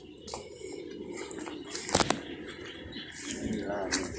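A few light clinks and clicks, the sharpest about halfway through, over steady low background noise, with faint voices near the end.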